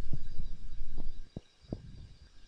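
About five muffled low thumps over a low rumble, which stops about a second and a half in.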